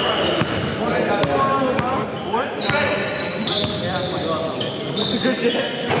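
Basketball bouncing repeatedly on a hardwood gym floor during play, with sneakers squeaking in short high chirps and players' voices echoing in a large gymnasium.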